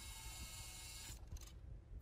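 Faint hiss with a thin high electronic whine that fades out about a second in, over a quiet low rumble: the noisy audio of the night-vision footage.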